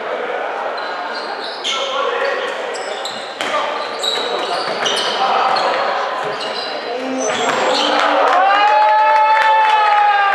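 Handball bouncing on a hardwood sports-hall floor and sneakers squeaking as players run, with shouts echoing in the hall; one long drawn-out call rises and falls near the end.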